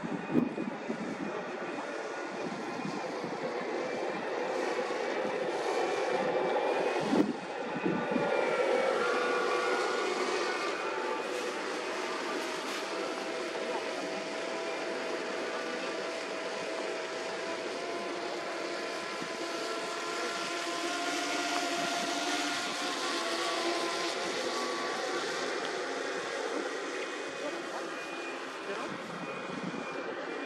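A steady engine drone with faint held tones, swelling somewhat in the second half, and one sharp knock about seven seconds in.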